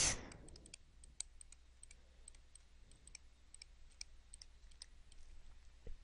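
Faint, irregular light clicks and taps of a stylus on a tablet screen during handwriting, over a low steady hum.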